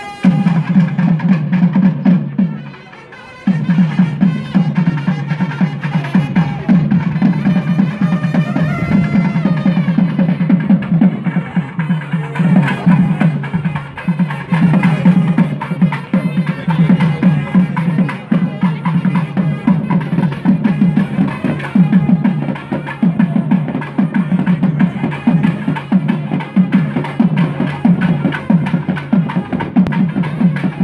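Fast, loud live drumming from a festival procession, with a melody line over it. It breaks off briefly about three seconds in, then carries on without a pause.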